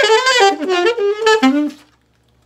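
Alto saxophone playing a fast bebop lick as a quick run of notes, moving downward and ending on a lower held note before stopping shortly before the end. The tonguing is not keeping up at this speed.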